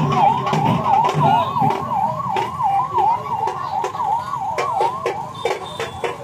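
A siren-like tone yelping up and down about two and a half times a second, with scattered sharp clicks over a low background rumble.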